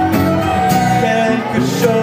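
Live band music with an acoustic guitar strummed close to the microphone, playing sustained chords.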